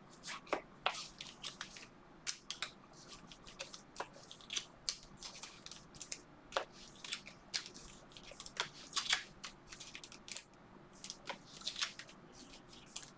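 Trading card packaging being torn open by hand: crinkly plastic wrapping crackling in a string of short, irregular, sharp crackles.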